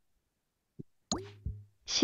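A faint click, then a short computer sound effect with a quick upward swoop and a pop as a new flashcard is dealt on screen, followed near the end by a brief spoken syllable.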